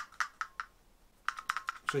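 A string of small, sharp clicks and taps from a melted plastic Bluetooth speaker being picked up and handled, with a short lull in the middle.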